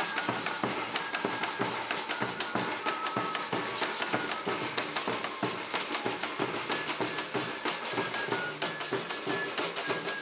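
Chirimía band music: a wooden transverse flute plays a melody in held notes over a steady, busy rhythm of drums and hand percussion.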